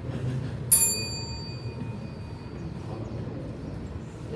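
A debate timekeeper's small metal bell is struck once, about a second in, and rings out with a bright, high tone that fades over a second or two. Low room noise runs underneath.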